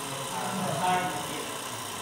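Small variable-speed electric motor running steadily, driving a string-vibration rig, with faint voices over it.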